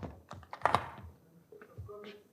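Footsteps on a wooden floor: a quick, uneven series of light clicks and knocks.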